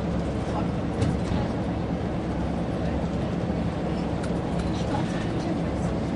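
Steady engine hum and road noise inside a coach cruising at speed, with a brief knock about a second in.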